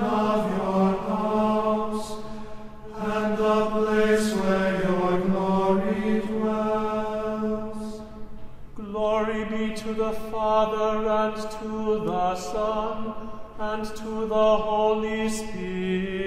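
Liturgical chant: a voice singing the Matins responsory on nearly level, sustained notes, with short breaks about two and a half and nine seconds in.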